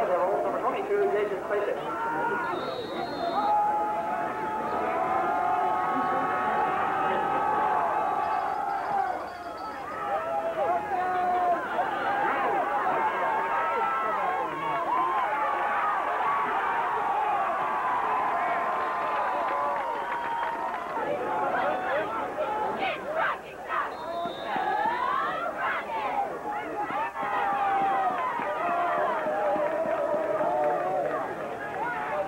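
Football crowd cheering, shouting and talking, many voices overlapping with no single voice standing out.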